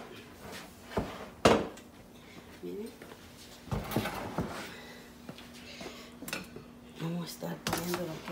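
Kitchen dishes and utensils knocking and clinking around an enamel cooking pot: a few separate sharp knocks about a second in, a cluster around four seconds in, and more near the end.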